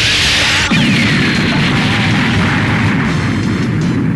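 Animated-series battle sound effects over background music: a loud hissing blast in the first second, then a tone falling in pitch over a continuing low rumble.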